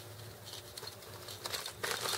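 Faint clicks and light rustling of fishing tackle being handled as a snap swivel is worked, with the clearest click a little before the end, over a steady low hum.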